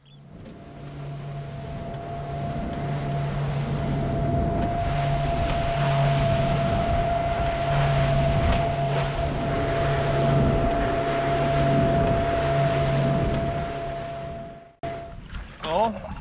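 Motorboat running fast over open sea: engine drone with the rush of hull, spray and wind, building over the first few seconds and then holding steady. It cuts off abruptly near the end, and a man's voice follows.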